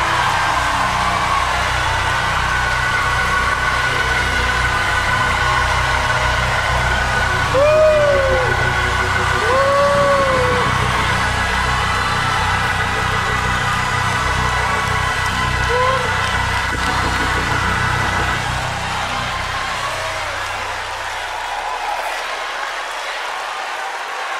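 A church congregation shouting and cheering in praise over sustained keyboard chords and a bass line. A couple of long rising-and-falling shouts stand out about eight and ten seconds in, and the bass drops out near the end.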